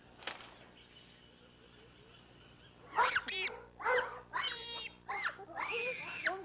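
Bonobos giving a series of short, high-pitched calls that rise and fall, starting about halfway in after a few quiet seconds.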